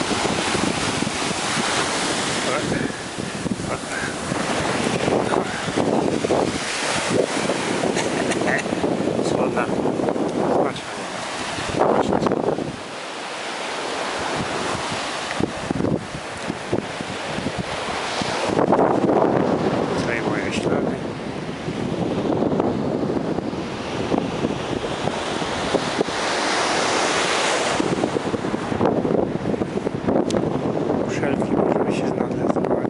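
Atlantic surf breaking and washing up a sandy beach, the rush of water swelling and easing as each wave comes in, with wind buffeting the microphone.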